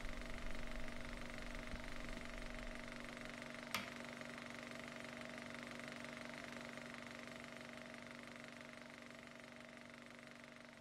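A steady, faint hum of several held tones, slowly fading out, with a single sharp click about four seconds in.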